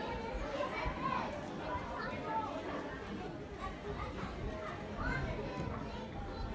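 Indistinct chatter of people in the room, including children's voices, faint under no main speaker.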